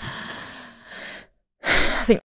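A woman breathing out in a long, soft, breathy sigh that fades away. After a moment of silence she takes a louder, sharp breath in near the end.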